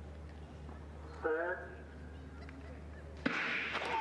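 A stadium race start: a short call of "set" from the starter about a second in, then the crack of the starting gun near the end, followed by rising crowd noise and a steady tone.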